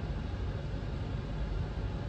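Steady cabin noise inside a parked Jeep Compass Trailhawk with its engine idling: a low, even hum with a faint hiss over it.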